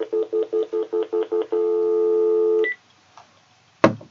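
An electronic phone-like alert: rapid pulsed beeps, about six a second, for a second and a half. Then one steady tone held for about a second, ending with a short higher blip.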